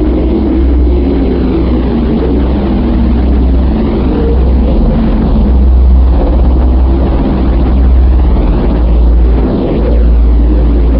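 Loud, steady deep rumble with slow, repeating whooshing sweeps over it: a cinematic drone sound bed under an edited outro, with no voice.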